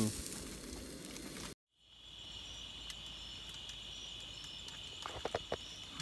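Sizzling from a skillet on a gas-canister camp stove for about a second and a half. After a brief dropout, a steady high-pitched chorus of night insects takes over, with a few soft clicks about five seconds in.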